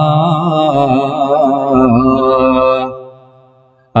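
A man's voice chanting a line of Arabic verse through a microphone in a slow, wavering melody, drawing out a long held note that fades away about three seconds in.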